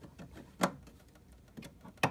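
A few small plastic clicks and taps as a toy playset part is handled and pressed onto its tab, the sharpest click about half a second in.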